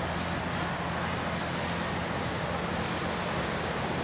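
Steady background noise with a low hum underneath, holding level with no distinct events.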